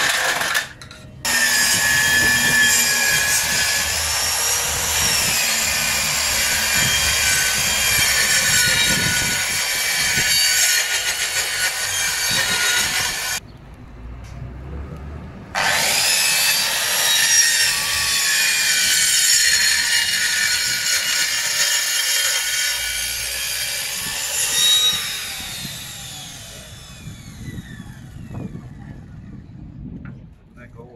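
Handheld electric circular saw cutting a board: it runs for about twelve seconds, stops for about two, then cuts again for about nine seconds before the blade winds down with a falling whine.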